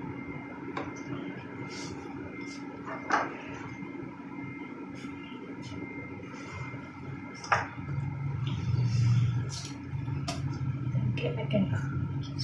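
Plastic spoon tapping and scraping against a plastic syringe barrel as feeding paste is spooned in: a few scattered light clicks over a steady room hum, with a low hum rising about eight seconds in.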